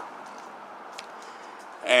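A pause in a man's talk: faint, steady background hiss with one small click about halfway through, then his voice starts again right at the end.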